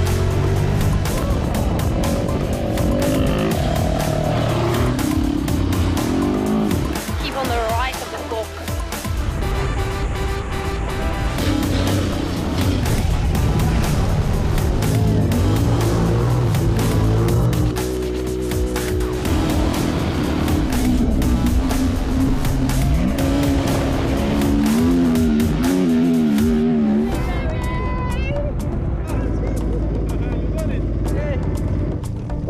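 Rally vehicle engines revving up and down from onboard, cutting between bikes and a car, over background music with a steady beat.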